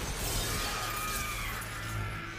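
Glass shattering, a sudden crash at the start with scattered pieces tinkling away over about a second, over a steady low rumble.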